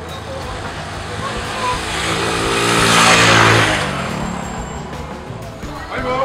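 A motor vehicle drives past close by on the street. Its engine and tyre noise swell to a peak about three seconds in, and the engine note drops in pitch as it goes by and fades away.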